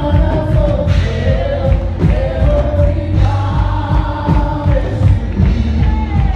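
Live worship band: several vocalists singing sustained notes together over acoustic guitar, bass guitar and a steady drum beat, amplified through the sound system.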